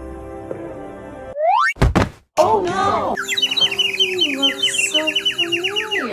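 Cartoon sound effects over background music: a quick rising glide and a loud thunk, then a rapid run of high tweeting bird chirps, the stock effect for someone dazed and seeing stars after a knock on the head.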